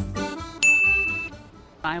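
Background music tails off, then a single high, bell-like ding sounds about half a second in and rings steadily for well under a second. A woman's voice begins just before the end.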